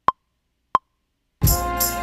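Short, even pitched clicks of a metronome count-in, two of them about two-thirds of a second apart, then a hip-hop beat from the Maschine starts about a second and a half in, with drums and keyboard chords.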